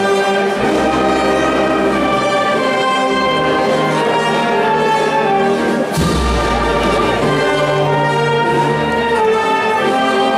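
Brass and wind band (banda de música) playing a processional march in sustained brass chords, with the bass line moving under them and a new low bass note coming in about six seconds in.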